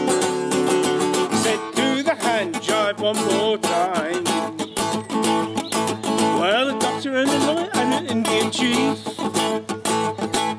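Steel-string acoustic guitar strummed in a steady rock 'n' roll rhythm, with a wavering melody line gliding over the chords.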